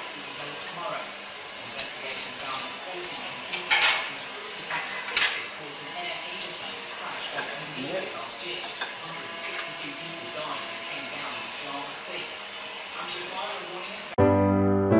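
Scattered clinks and knocks of a plate and cutlery, several sharp ones within the first five or so seconds, over a steady room hum with faint voices in the background.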